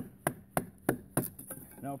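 Batoning: a wooden baton knocking on the rounded spine of a Battle Horse Knives Chris Caine Survival Knife, driving the blade down through a stick of softwood. About five sharp knocks come at roughly three a second.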